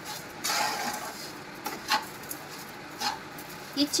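A spatula stirring and scraping grated coconut cooking with sugar in a kadhai: a longer scrape about half a second in, then single scrapes against the pan near the middle and again later.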